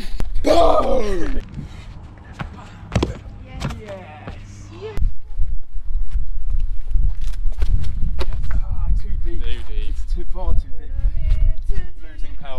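A man's drawn-out shout, falling in pitch, about half a second in, followed by a few sharp knocks and brief talk. From about five seconds in, a loud steady low rumbling noise on the microphone runs under faint voices.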